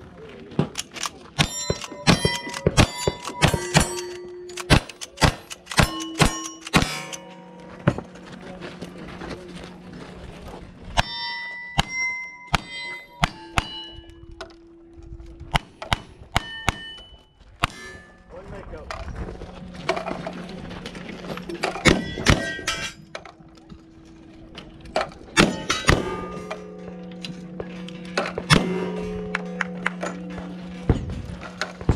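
A fast string of gunshots from a lever-action rifle and then a revolver, many shots followed by the brief ringing clang of a hit steel target.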